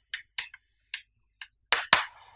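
Chalk writing on a blackboard: short taps and scratches of the chalk stick, a few per second and irregularly spaced, with two louder strikes near the end.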